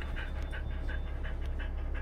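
A dog panting quickly, about three breaths a second, over the steady low rumble of the van's engine and road noise.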